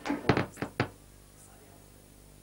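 A quick run of about five sharp knocks in the first second, followed by a faint low steady hum.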